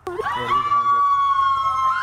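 Girls screaming: a long, steady, high-pitched scream held from about half a second in, with a second voice screaming over it at first.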